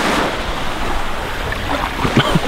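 Small sea waves washing steadily at the shoreline, with wind on the microphone.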